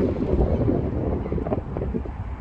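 Wind buffeting the microphone in uneven, gusty rumbles.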